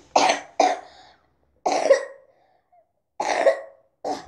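A young girl coughing four times: two quick coughs close together, then two more spaced out.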